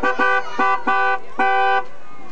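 A vehicle horn honking in about five quick blasts, each a steady chord of fixed pitches, the last two held longer.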